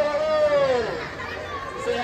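High-pitched voices chattering in a crowd, with one drawn-out call falling in pitch in the first second.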